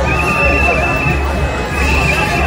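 Noise of a marching street crowd with a shrill, slightly trilling whistle blown in long blasts, one just after the start and another starting near the end.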